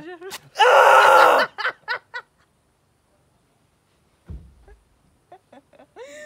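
A leg-wax strip ripped off a man's shin with a sharp tearing snap, followed at once by his loud, strained yell of pain lasting about a second, then a few short gasps. A low thump comes about four seconds in, and small laughs near the end.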